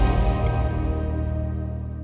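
Closing jingle for a logo animation: the music dies away while a bright, high chime rings out about half a second in and holds for over a second, then everything fades.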